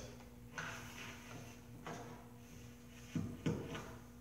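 Circular saw's rubber power cord being handled and drawn through the hands, with soft rubbing and light knocks; two sharper knocks come close together near the end.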